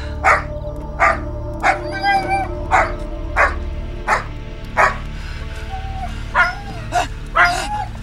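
A dog barking repeatedly, about one bark every two-thirds of a second with a short pause in the middle, over a low, steady music score.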